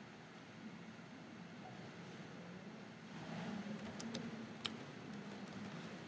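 Faint computer mouse and keyboard clicks, a few sharp ones a little past halfway, over a low steady hum of room tone.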